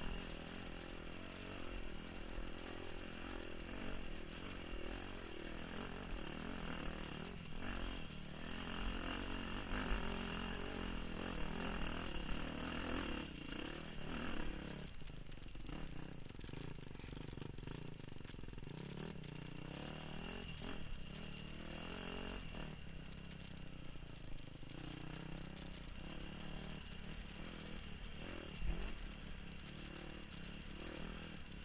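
Dirt bike engine running under load, its pitch rising and falling as the throttle opens and closes, with a few sharp knocks from the bike over rough ground.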